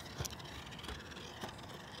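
Faint outdoor background noise with a couple of soft low thumps from walking with a hand-held phone.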